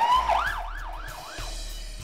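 Fire engine siren: a rising wail that switches into a fast up-and-down yelp, about three cycles a second, fading toward the end.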